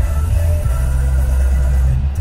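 Short burst of commercial music playing over a car radio, with sustained bass notes and held tones, heard inside the cabin of a moving car.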